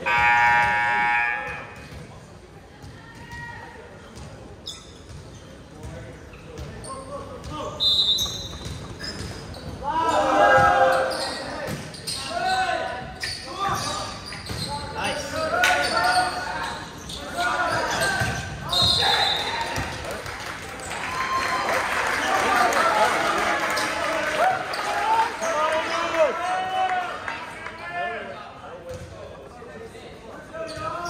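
Indoor volleyball game in a reverberant gym: sharp knocks of ball contacts and play on the hardwood, with short high whistle blasts about eight seconds in and again near twenty seconds. Players and spectators shout and cheer over the rally, building to a loud swell of voices after the second whistle.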